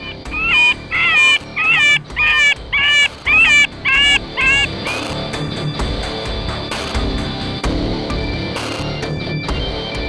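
An electronic predator call plays a short animal distress call through its speaker: about eight shrill cries, roughly two a second, which stop about five seconds in. Background music runs underneath and carries on alone after the calls stop.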